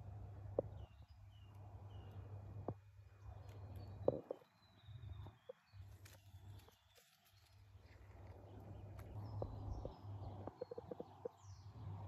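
Quiet outdoor garden ambience: faint, short bird chirps over a low rumble, with a few soft clicks.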